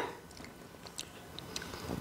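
Faint mouth clicks and smacks of a toddler tasting a spoonful of dessert: a few soft ticks, one slightly louder about halfway through.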